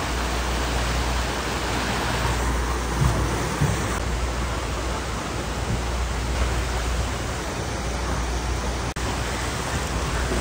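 Steady rush of falling and splashing water from water slides and a churning pool, with a low rumble underneath.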